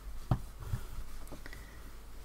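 Quiet handling sounds of hands working a small stuffed fabric figure with needle and thread, with a short light knock about a third of a second in and a few soft thuds just after, over a low steady hum.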